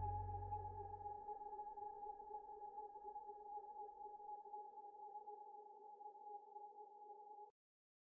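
Background music ending on one long held chord that slowly fades and then cuts off suddenly near the end.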